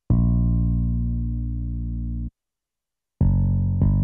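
BooBass, FL Studio's bass synthesizer plugin, sounding single bass notes as each one is drawn into the piano roll. One held note lasts about two seconds; after a pause, two shorter notes follow in quick succession near the end.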